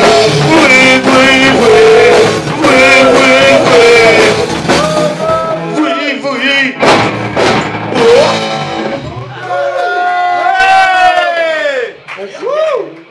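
Live rock band, singing over electric guitar and drums, playing the closing bars of a song. About halfway through come a few sharp drum and cymbal hits, then a long held note that bends downward in pitch as the song winds down.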